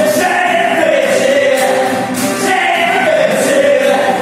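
Live singing accompanied by two acoustic guitars, one of them a nylon-string classical guitar.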